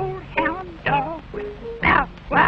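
A cartoon voice making a run of short, wavering animal-like calls, about two a second, over a band accompaniment.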